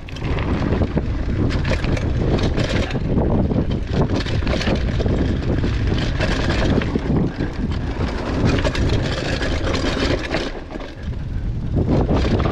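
Trek Marlin 5 mountain bike rolling downhill on a dirt trail: a steady rumble of tyres on dirt with rattling knocks over bumps, mixed with wind rushing over the microphone. It eases briefly about a second before the end.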